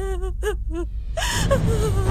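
A woman sobbing and wailing in a high, wavering voice that breaks into short cries, with a gasping breath a little past the middle.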